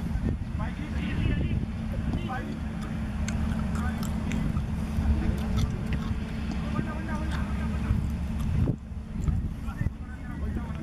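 Wind buffeting the microphone with a steady low rumble, under faint distant voices of players talking on the field.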